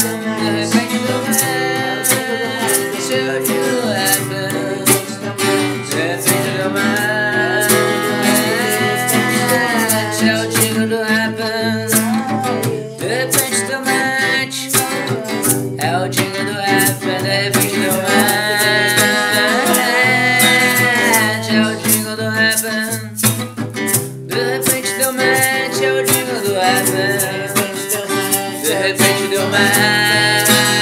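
Acoustic guitar strummed steadily, with a voice carrying a gliding melody over it.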